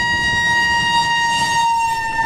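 A vehicle horn held in one long, steady single-pitch blast over road noise. Its pitch dips slightly near the end as the vehicle passes.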